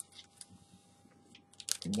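Plastic snack bag crackling in short, light clicks as it is handled and a Pocky stick is drawn out of it. There are a few crackles at the start and a quick run of them near the end.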